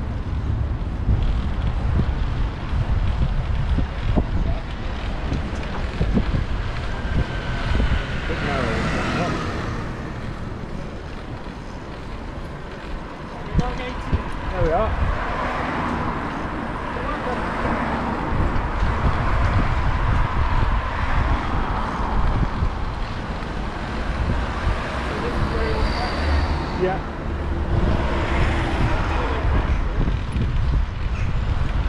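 Wind noise on the microphone of a camera on a moving bicycle, with road traffic swelling and fading as it passes a few times.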